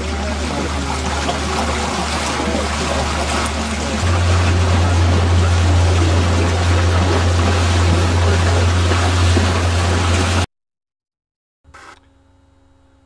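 A boat's motor running steadily under wind and rushing water, with a low drone that steps up louder about four seconds in. It cuts off suddenly near the end, leaving a second of silence.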